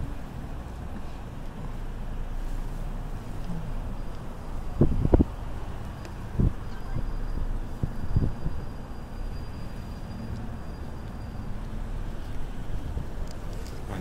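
Road noise inside a moving car's cabin: a steady low rumble. A few thumps come through it, the loudest a quick double knock about five seconds in, then single ones at about six and eight seconds.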